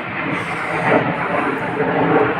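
Airplane flying over, a steady drawn-out noise.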